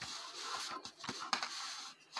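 Soft rustling and scratching with a few light taps, from hands handling and flattening a crocheted cotton cloth on a paper surface.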